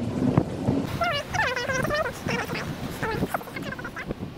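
A woman's voice making wordless, high sounds that slide up and down in pitch, densest about a second in.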